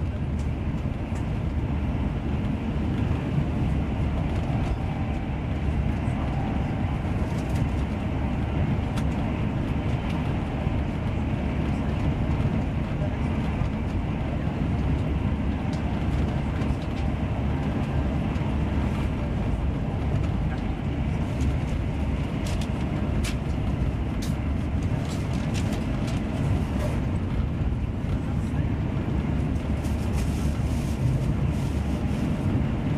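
Steady running rumble of wheels on rail inside a passenger coach of an InterCity 125 HST at speed, with a few faint clicks in the second half.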